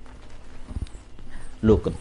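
A man's voice giving a sermon in Khmer pauses for about a second and a half, then resumes near the end. A few faint, low knocks fall in the pause.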